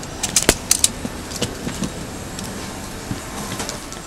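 A quick cluster of sharp clicks and knocks in the first second, then scattered lighter ones, over the steady hum of an airliner cabin.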